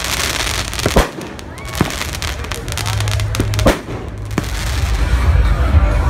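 Fireworks going off: about four sharp bangs over steady crackling. Near the end, loud bass-heavy music takes over.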